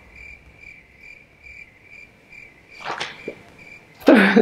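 Cricket chirping: an even, high chirp repeating about three times a second, with a brief rustle about three seconds in.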